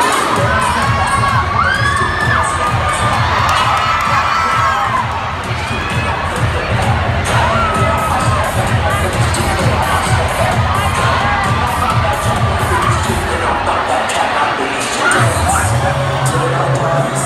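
Large crowd of students cheering and screaming, with the bass beat of the dance routine's music underneath.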